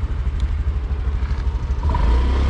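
Small scooter engine running at low speed, a steady fluttering low rumble. It gets louder near the end as the throttle opens.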